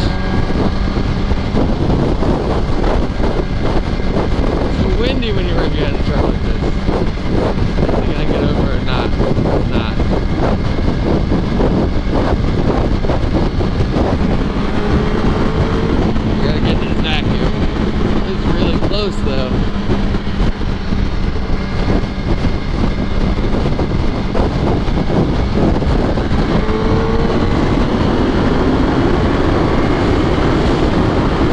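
Yamaha R1 sport bike's inline-four engine running at highway speed under heavy wind noise on the camera microphone. The engine note rises as the bike accelerates near the start and again near the end.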